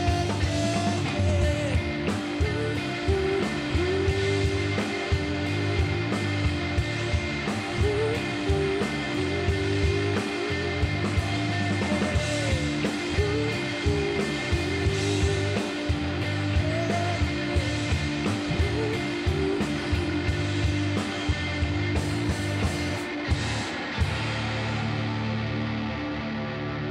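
Indie rock trio playing live: electric guitar, bass guitar and drum kit, with regular drum hits and cymbals under a wandering guitar line. Near the end the cymbals drop away and the band rings out on a sustained chord as the song closes.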